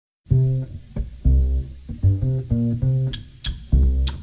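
A plucked bass starts alone after a brief silence, playing a syncopated line of short and held low notes. Two sharp percussion clicks come in near the end.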